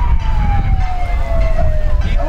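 A siren wailing, its pitch sliding slowly downward, over a low rumble of crowd and street noise.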